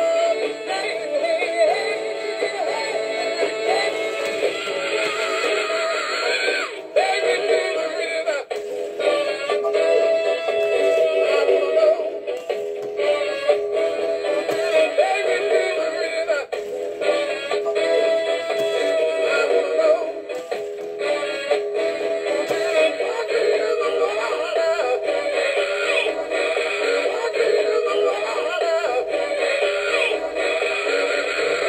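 Rockin Singing Bass animatronic fish singing a song through its small built-in speaker: a recorded voice with band backing, thin and tinny with no bass.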